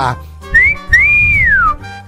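A wolf whistle, the catcall a man whistles at a passing woman: a short rising note, then a longer note that holds and glides down. It plays over a background music bed.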